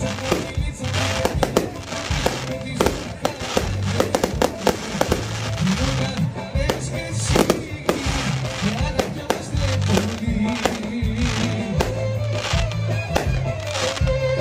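Aerial fireworks going off in many sharp bangs and crackles at irregular spacing, over loud music.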